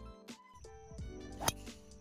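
Background music, with a single sharp crack of a driver striking a golf ball off the tee about one and a half seconds in.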